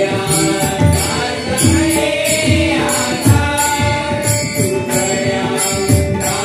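A Marathi devotional bhajan group performing an abhang. A lead voice sings over a steady harmonium, while a drum and small hand cymbals keep a regular beat.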